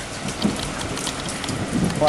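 Steady rush of water from a muddy, rain-swollen stream running fast over rocks.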